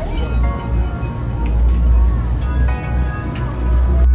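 Background music with a deep bass line and long held tones.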